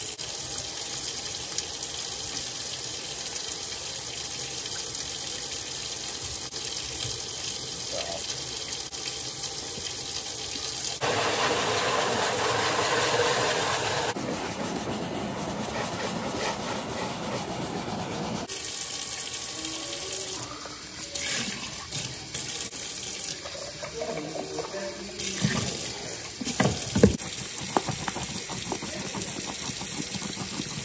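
Kitchen faucet running into a stainless steel sink. For a few seconds in the middle it is louder, and the water pours into a plastic tub of soapy water. In the second half, short clinks and knocks come from the baby bottles being handled and scrubbed at the sink, with a couple of sharper knocks near the end.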